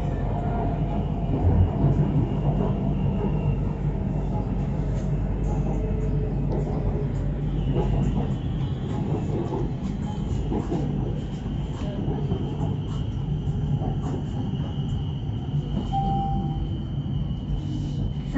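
Bangkok BTS Skytrain car running on its elevated track, heard from inside: a continuous low rumble and rolling noise. A thin, steady high whine comes in about halfway through and holds.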